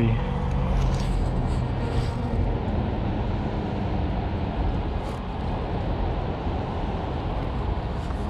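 Steady rushing outdoor noise, strongest in the low end, with no distinct events.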